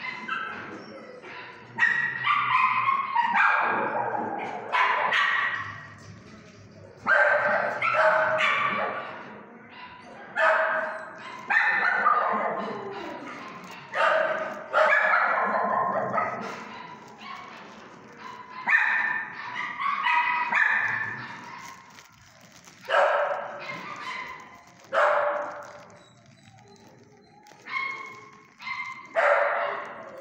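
Dogs barking and yipping over and over, loud calls every couple of seconds, each trailing off in echo off the hard walls of a shelter kennel.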